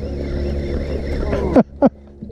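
Baitcasting reel being cranked against a hooked striped bass: a steady whir over a low rumble, which stops about a second and a half in, followed by two short laughs.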